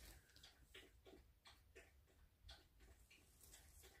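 Near silence: room tone with a low hum and faint, irregular soft ticks.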